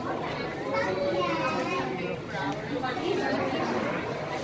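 Background chatter: several people, children among them, talking indistinctly in a large indoor hall.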